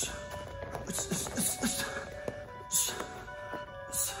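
Background music with held tones, over which come several short, sharp hissing exhales ("shhh") timed with punches during shadowboxing.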